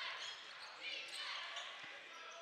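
Basketball being dribbled on a hardwood court with a few short high sneaker squeaks, over steady arena crowd noise.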